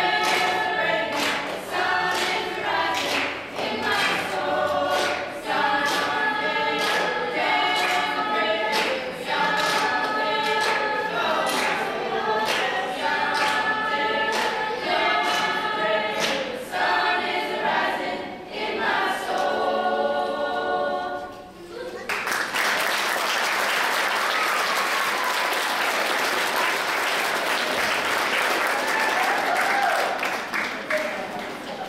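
School choir singing with hand claps on the beat, about two a second, ending on a long held chord. About three quarters of the way through, the singing stops and the audience applauds.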